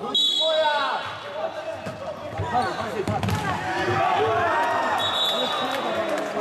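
Futsal game in a sports hall: players shouting to each other, with the ball knocking on the wooden floor. A referee's whistle sounds briefly twice, just after the start and again near the end.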